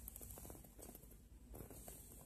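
Near silence with faint, scattered light ticks and rustles: handling noise from a handheld camera being moved.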